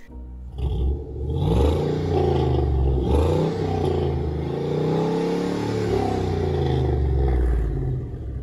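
Engine of a lowered 1960s Chevrolet C-10 pickup running loud and deep as the truck pulls slowly by, its note rising and falling in pitch.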